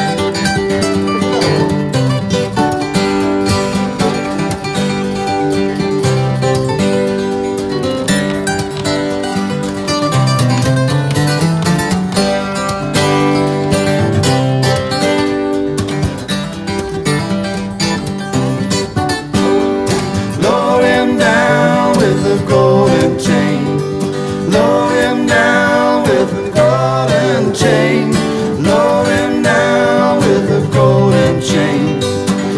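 Acoustic guitars playing an instrumental break in a blues song, with one guitar picking a lead line over the others' chords. Some notes glide in pitch in the second half.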